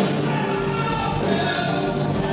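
Live band playing with singing voices, the music going on without a pause.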